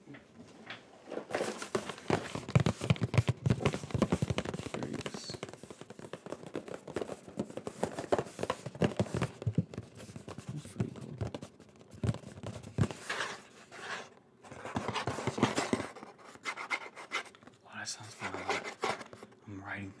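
Close-miked rustling, scratching and crackling as a small white package is handled right by a sensitive microphone, an irregular run of dense crackles and clicks.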